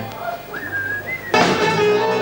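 Live wedding dance band with electric keyboard: the music breaks off, a lone high whistle holds for under a second, stepping up in pitch, then the full band comes back in loudly about one and a half seconds in.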